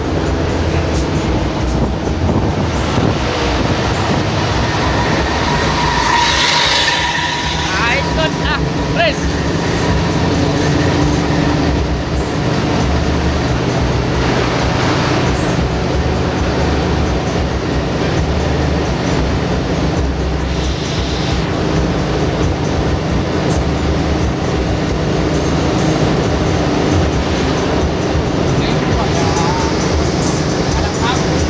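Steady engine and road drone heard from inside the cabin of an intercity bus cruising on a highway.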